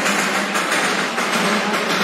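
Steam locomotive of the Darjeeling Himalayan Railway toy train blowing off steam: a loud, steady hissing rush.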